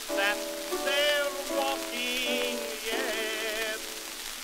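A male singer with wide vibrato sings a ragtime song over piano accompaniment, played from a 1912 acoustic-era Pathé vertical-cut disc. Steady surface hiss and crackle from the record run underneath, and the sound is thin, with nothing in the bass.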